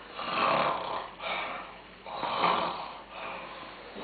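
An elderly woman imitating snoring: four breathy mock snores in a row, the last one weaker.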